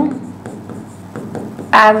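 Faint strokes of a marker writing on a board.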